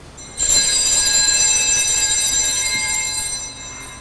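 Altar bells (a cluster of small Sanctus bells) rung at the consecration of the Mass: several high ringing tones that start sharply and fade away over about three seconds.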